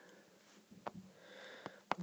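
A quiet pause with a faint breath drawn in during the second half and a few soft clicks.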